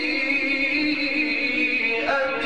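A male Quran reciter holding one long melodic note in tajweed-style recitation, the pitch held steady throughout.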